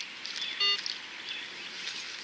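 A metal detector gives one short beep over the freshly dug hole, signalling that the target is still in the ground. Birds chirp faintly in the background.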